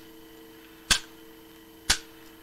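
Old iron padlock worked by hand: two sharp metallic clicks about a second apart, over a steady low hum.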